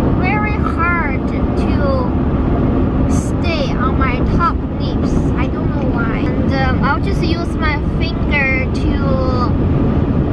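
Steady road and engine noise inside a moving car's cabin, with a high voice gliding up and down over it throughout.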